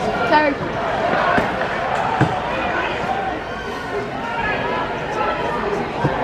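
Shouting voices of hurlers and sideline mentors calling during open play, with a single sharp knock about two seconds in.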